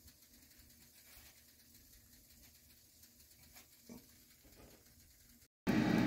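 Near silence with a couple of faint brief soft sounds about four seconds in; near the end, after a cut, the steady whir of an air fryer running.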